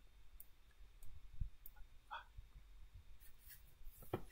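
A few faint, scattered clicks from working a computer's keys or mouse while a config file is edited.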